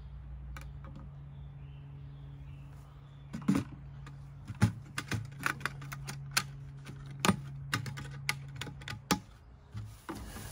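Irregular hard plastic clicks and knocks, starting about three and a half seconds in, as the pump head and hose of a Ryobi battery-powered two-gallon chemical sprayer are handled and fitted onto its tank. A steady low hum runs underneath.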